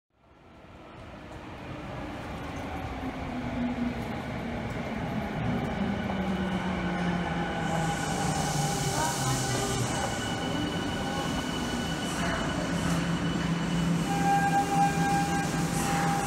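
Subway train running into an underground station platform: a steady low rumble with several held whining tones, and a burst of high hiss about halfway through.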